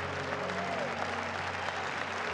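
Congregation applauding steadily, with a few faint sustained tones underneath.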